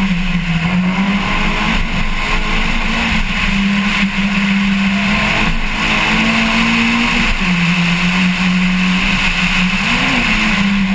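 Race car engine heard onboard, running hard under load, its note stepping up and down a few times through the corners, with steady road and wind noise.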